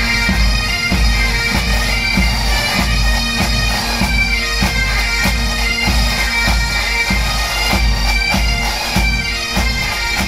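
Massed Highland bagpipes playing a tune over their steady drones, with snare and bass drums of the pipe band beating in time.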